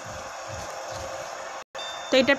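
Steady background hiss of room noise with faint low thumps, broken by a brief complete dropout to silence near the end, where the recording is cut.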